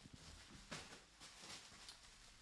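Near silence, with a few faint rustles of plastic bubble wrap being moved by hand.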